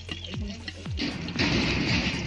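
Background music with a steady beat. From about a second in, hot oil sizzles louder as taquitos dorados and empanadas are turned with a metal spatula on a frying comal.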